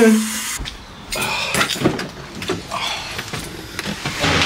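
A series of short knocks and clicks inside a car, with brief indistinct talk.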